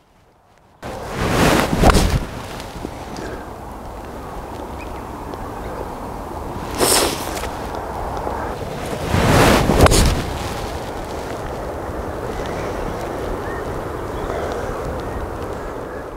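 Wind rumbling on the microphone, with louder gusts about two seconds in and again around nine to ten seconds, and one short, sharp sound about seven seconds in.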